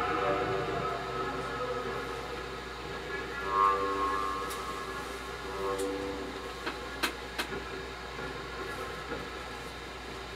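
Live instrumental accompaniment holding a sustained chord that slowly fades, with a brief higher note about three and a half seconds in and two sharp clicks around seven seconds.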